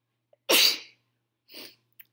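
A woman sneezing once, loudly and suddenly, into her hand, followed about a second later by a short, quieter breath.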